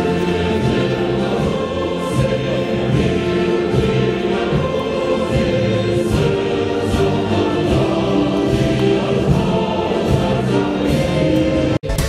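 A choir singing an anthem with musical accompaniment, breaking off abruptly near the end.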